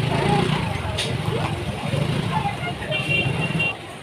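Busy market street: a motor vehicle's engine running close by under scattered voices of passers-by. Near the end there is a short high steady tone, and the sound drops off suddenly.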